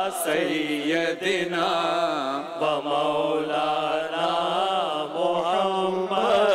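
An Urdu naat sung by a man's voice, unaccompanied by instruments, in long bending melodic phrases. A steady low hum of voices is held underneath.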